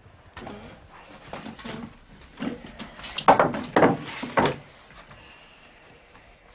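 Short scraping and knocking strokes of wood as a hurley is worked at a cooper's mare (shaving horse). The loudest strokes come close together about three to four and a half seconds in.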